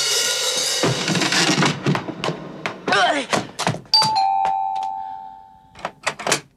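A short burst of lively film music with drums, then an electric doorbell chime about four seconds in: a higher note and then a slightly lower one, ringing on together for nearly two seconds.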